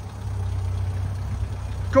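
A vehicle engine idling steadily, a low, even rumble.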